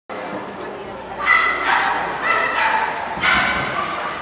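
A dog giving three high-pitched barks about a second apart, over a background of voices echoing in a large hall.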